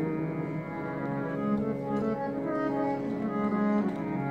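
Two harmoniums playing a held melody in Sikh kirtan, between sung lines, with a few soft tabla strokes.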